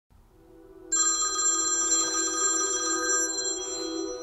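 Smartphone ringing with a fast-trilling electronic ringtone that starts about a second in and stops shortly before the end, over soft, sustained background music.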